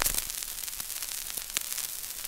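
Surface noise from a 1930 78 rpm record played back through a flat, unequalized phono preamp: a steady hiss peppered with clicks and crackles, with a loud click right at the start.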